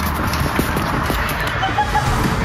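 Irregular scuffs and knocks of footsteps and of clothing and gear brushing against rock while squeezing through a narrow cave crevice, close to the microphone.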